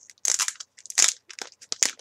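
Packaging of a mailed trading-card package being torn open and handled: an irregular run of crinkling, crunching crackles.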